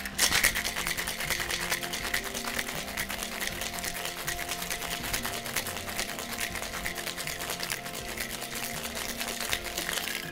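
Ice cubes rattling hard inside a sealed Boston shaker, metal tin over glass, shaken vigorously: a continuous fast clatter.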